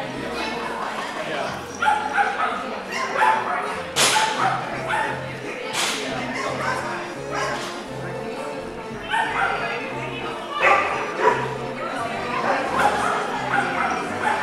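Background music with a dog barking repeatedly over it, the sharpest, loudest barks about four and six seconds in.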